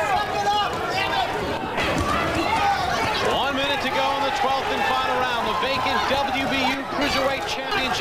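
Speech: men's voices of the TV boxing commentary running throughout, with a faint crowd murmur from the arena underneath.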